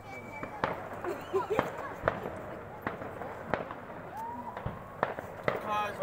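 Fireworks and firecrackers going off: about seven sharp bangs at uneven intervals.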